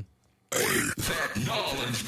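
A recorded voice drop played back through iZotope VocalSynth's 'Sweet Gibberish' preset, starting about half a second in. Harsh, gritty synthesized vocal layers are blended with the original dry voice turned right up.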